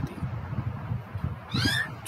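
Quiet background, then near the end a brief high-pitched, animal-like call that falls in pitch.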